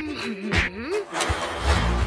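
Cartoon sound effects: a wavering, gliding tone with a few knocks in the first second, then a low truck engine rumble that swells from about halfway in.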